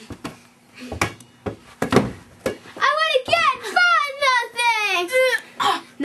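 A rubber playground ball bouncing on a hard floor, several sharp knocks in the first half, then a child's high voice going up and down without clear words for a couple of seconds.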